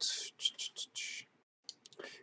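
A man whispering under his breath for about a second, followed by a few faint clicks near the end.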